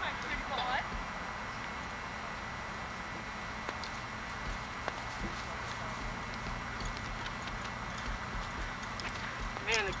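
A saddled horse walking while being led on a lead rope, its hooves giving a few soft, irregular steps over a steady background hiss. Short bits of voice come at the very start and near the end.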